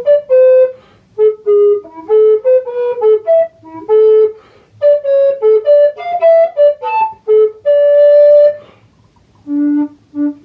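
A recorder played solo: a lively melody of short, quick notes. About eight seconds in, the phrase ends on a long held note, followed by a short pause before the next phrase begins.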